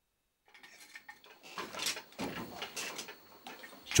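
Traditional wooden hand loom for Zhuang brocade being worked: irregular wooden clacks and rattles of the loom's parts. The sound starts about half a second in, after silence.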